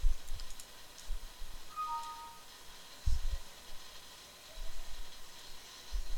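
Computer-desk sounds during a screencast: mouse and keyboard clicks with a few low bumps on the microphone. About two seconds in comes a short two-note falling computer chime.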